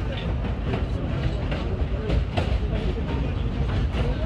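R32 subway car running on the track: a steady low rumble with irregular clacks of the wheels over rail joints, heard from inside the car, with passengers talking.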